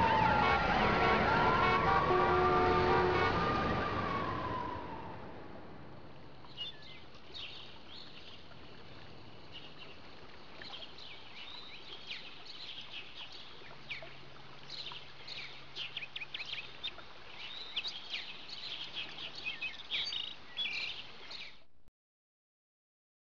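A wailing, siren-like tone that falls and rises over other held tones, fading out over the first five seconds. After that come faint, short, high chirps like small birds twittering, growing busier toward the end before cutting off.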